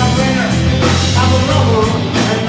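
Live rock band playing: electric bass, guitar and drum kit in a loud, steady groove with cymbal strikes, no lyrics sung.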